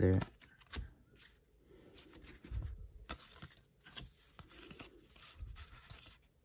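Cardboard trading cards being flipped through by hand, one card slid off the stack after another, giving irregular soft scrapes and light clicks of card against card.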